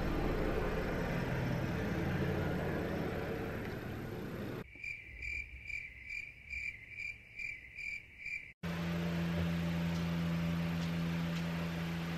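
A cricket-chirping sound effect, about two chirps a second for some four seconds, laid over a silent edit. Before it there is plain room hiss, and after it a steady low electrical hum.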